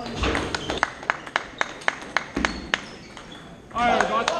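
Table tennis ball clicking against bat and table in a quick, even series of light taps, about four a second, with a voice calling out just before the end.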